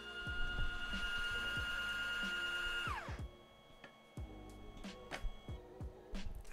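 Nimble nail-painting robot's motors running as the device prepares itself: a loud, steady whine that glides down in pitch and stops about three seconds in. A fainter whine with a few light clicks follows.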